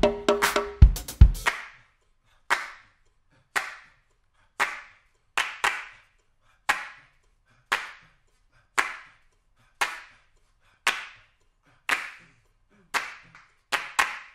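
A funk drum kit groove ends about a second and a half in. Then come slow, steady single hand claps, about one a second, each with a short room echo.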